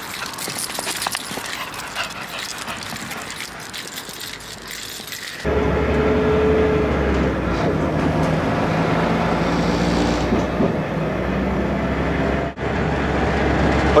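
For the first five seconds, outdoor noise with irregular scuffing or crackling. It then changes suddenly to the steady low rumble of a passenger train running, heard from inside the carriage, with a brief steady whine just after the change.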